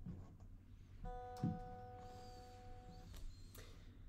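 Faint acoustic guitar closing a song: a single soft note is plucked about a second in, rings for about two seconds and is then muted, with a light knock just after the pluck.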